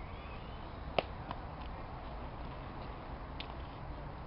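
Outdoor background noise with a steady low rumble. There is one sharp click about a second in, and fainter clicks shortly after and near the end.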